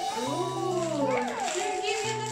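A young girl talking in a high-pitched voice.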